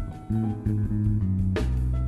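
Live jazz trio playing: an electric bass guitar plays a line of held low notes under piano, with drums and one cymbal crash about one and a half seconds in.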